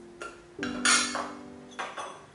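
Metal tin and lid being handled: several sharp clinks, the loudest a clatter a little under a second in, over soft piano music.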